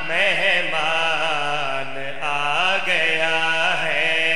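A man singing a qasida in long, drawn-out notes that waver and bend in ornamented runs, with a new held phrase starting about three seconds in.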